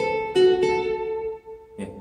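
Steel-string acoustic guitar, single notes picked high on the neck in a C major scale phrase: two notes, the second about a third of a second in, ring and fade out within about a second and a half, then a faint pluck near the end.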